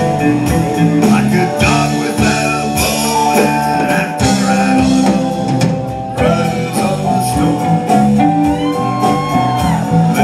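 Live rock band playing: electric guitar and drums, with a man singing through the PA.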